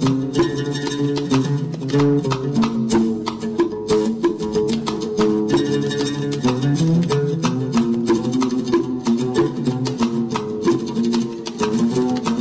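Instrumental music: a plucked string instrument playing quick runs of notes over frequent percussive strikes.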